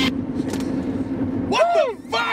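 Steady low engine hum and road noise inside a car's cabin; near the end a man's voice comes in with a pitch that rises and falls.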